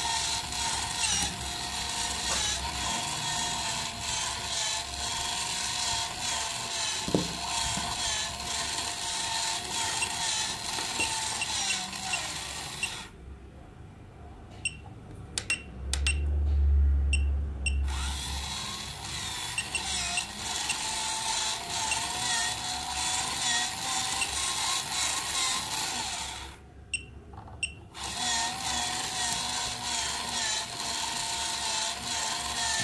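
Small DC gear motor inside a coin-eating face bank toy, run on 8 volts from a bench power supply: a steady whirring gear whine that wavers slightly in pitch, with scattered clicks. It cuts out twice for a second or few, about thirteen seconds in and again near the end, and a brief loud low rumble comes around sixteen seconds.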